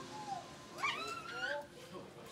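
High-pitched young voices calling out in short squeals that slide up and down in pitch, loudest in a cluster in the second half.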